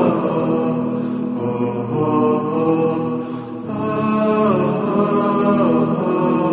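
Melodic vocal chanting in long held notes that slide down in pitch, with no speech.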